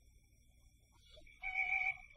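A voice holds a short high sung note for about half a second near the end, after a brief pitched lead-in. A faint steady high whine from the old soundtrack runs underneath.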